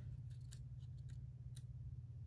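Quiet room tone: a steady low hum with a few faint, scattered ticks.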